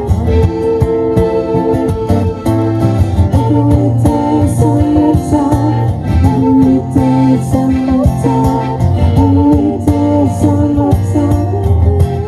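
Live acoustic pop cover: steel-string acoustic guitar strumming and accordion, with a man and a woman singing.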